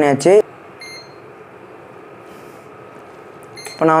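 Induction cooktop's control panel giving one short electronic beep about a second in as its setting is changed.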